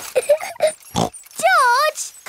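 A cartoon toddler piglet's voice: a few short pig-like vocal noises, then near the end a wavering, rising-and-falling whine as he starts to cry.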